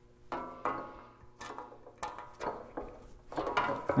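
Small metal clicks and knocks as brass saw nuts are fitted through a wooden saw handle and steel saw plate and pop into place, a handful of short sounds spread out and closer together near the end.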